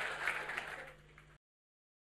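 Audience applause fading away, then cutting off abruptly to silence a little over halfway through.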